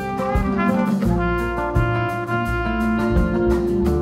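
A live band plays: a trumpet carries the melody in sustained notes over acoustic guitar, bass guitar and a drum kit keeping a steady beat.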